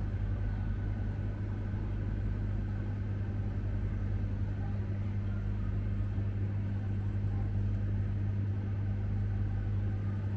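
Open-front refrigerated display chiller running: a steady low hum with a faint airy hiss from its fans.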